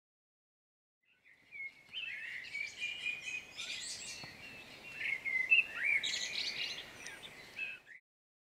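Wild birds singing: a mix of quick chirps and short whistled phrases, starting about a second in, over faint outdoor background noise.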